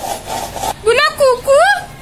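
A small plastic container scraped and rubbed along a rough concrete window ledge, a rasping noise for the first three-quarters of a second. Then a high voice gives two short calls that swoop up and down, louder than the scraping.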